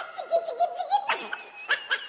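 A voice laughing in quick, high-pitched bursts, heard through the show's sound system as part of the dance routine's mixed track.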